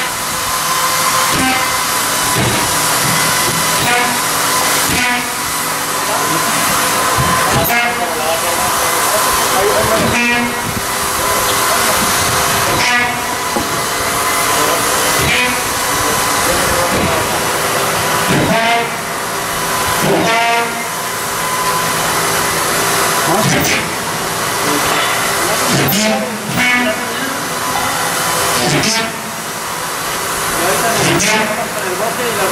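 Loud, steady hissing noise with a faint steady hum, typical of jobsite equipment running, with indistinct voices coming through every few seconds.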